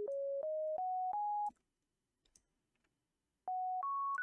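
Serum software synth playing a bare sine wave with no added harmonics: a short run of single pure notes stepping upward in the first second and a half, a pause of about two seconds, then two higher notes near the end. Each note starts and stops with a faint click.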